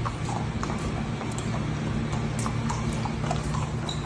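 Horses' hooves walking on a dirt barn-aisle floor: soft, uneven steps, over a steady low hum.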